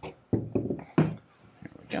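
Brief muttered speech sounds and a sharp metallic click about a second in, from handling the open lever action of a Howard Thunderbolt carbine.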